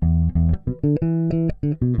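Four-string electric bass guitar played fingerstyle: a short groove in 12/8 time, a run of low plucked notes in a lilting triplet rhythm, some clipped short and some held.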